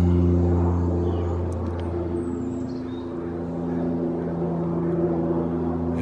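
Steady low hum of an engine, a stack of held tones that ease off a little in the middle and swell again. A faint thin high chirp comes about halfway through.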